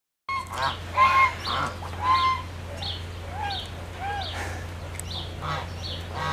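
Birds calling: a series of short calls, each rising and then falling in pitch, about one a second, over a steady low hum.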